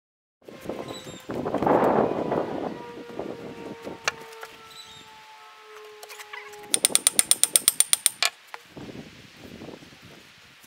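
Hand tools working on a steel hydraulic cylinder: a clatter of metal handling early on, a steady ringing tone for a few seconds, then a fast, even run of about a dozen ratchet-wrench clicks.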